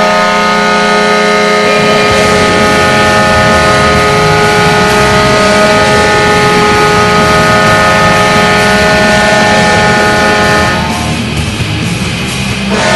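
Atlanta Thrashers arena goal horn sounding one long, loud, steady blast of several tones at once, cutting off about eleven seconds in.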